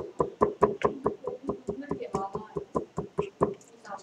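A stylus tapping on a tablet screen during handwriting: a quick run of sharp taps, about five or six a second, stopping shortly before the end.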